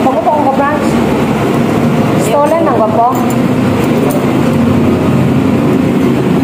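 Restaurant din: many voices talking at once in a steady, loud babble, with one nearer voice standing out briefly at the start and again about two and a half seconds in.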